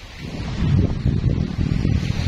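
Wind buffeting the phone's microphone: a loud, low rumble that builds about half a second in and continues.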